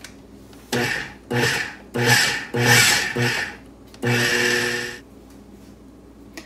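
KitchenAid food processor pulsed in short bursts, its motor humming as the blade chops banana and dry powders into a crumbly mix. There are about six quick pulses, the last a longer run of about a second.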